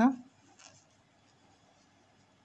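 A spoken count word ends, then faint scratchy rubbing of cotton yarn drawn over a metal crochet hook as front post double crochet stitches are worked.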